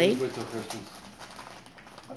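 A short spoken word, then faint rustling of a brown paper gift bag being handled and torn open.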